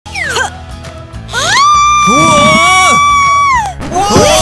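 A woman's voice holds one long, shrill high note for about two seconds, sliding down as it ends, over background music.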